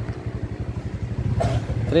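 Small motorcycle engine running at low speed, a fast even low pulsing.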